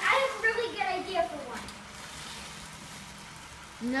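A voice speaking briefly, then a faint, steady background hiss with a low hum.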